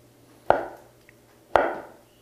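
Chef's knife cutting through a block of tempeh and knocking on a wooden cutting board twice, about a second apart.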